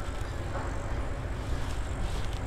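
A steady low rumble of background noise with a faint hiss above it.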